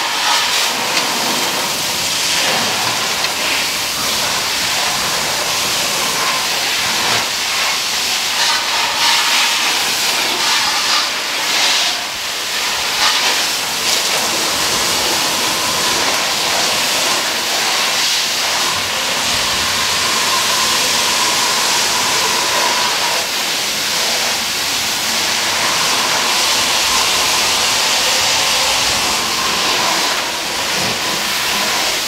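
Fire hose stream spraying water onto a burning truck: a loud, steady hiss of spray.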